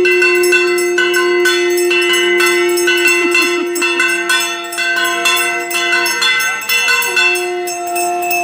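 Puja hand bell rung fast and continuously, over a conch shell blown in a long held note that breaks off about six seconds in for a breath and then sounds again. Together they are the bell and conch of the worship ritual.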